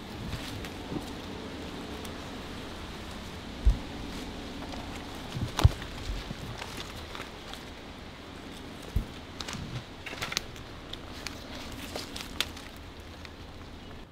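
Footsteps and rustling through leafy undergrowth, with several sharp snaps and knocks of twigs and branches, over a faint steady hum.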